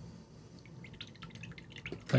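A few faint, small clicks and ticks that come more often toward the end, over a low steady background hum.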